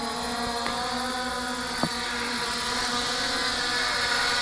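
MJX Bugs 5W quadcopter's brushless motors and propellers whirring steadily as it hovers and comes down to land by itself, failsafe return-to-home after its radio is switched off. It grows a little louder as it nears the ground, with one brief click about two seconds in.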